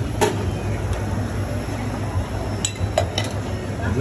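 Metal spades clinking and scraping on a frozen stone slab as ice cream is mixed with toppings. There are a few sharp clinks, one about a quarter second in and a cluster near the end, over a steady low hum of shop noise.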